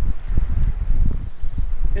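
Wind buffeting the microphone: a loud, uneven low rumble that keeps rising and falling.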